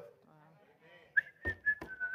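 About a second of near silence, then a short, thin whistling tone that falls slightly in pitch, with two soft knocks under it.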